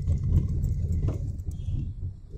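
Low, uneven rumble of a road vehicle in motion, heard from on board, with a few faint clicks.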